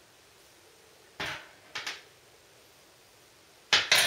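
Low room tone broken by a short scuffing knock about a second in, two quicker ones just after it, and a sharper, louder knock near the end, like small objects being handled.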